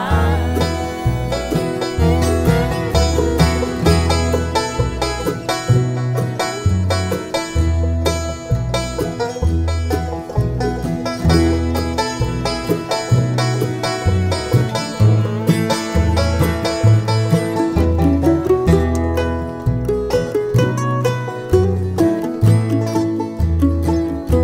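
Live bluegrass band playing an instrumental passage, with five-string banjo picking out in front over strummed acoustic guitars. An upright bass plays a steady walking beat of about two notes a second.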